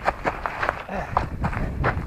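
Irregular crunches and knocks of footsteps on loose stony ground close by, with a low rumble underneath.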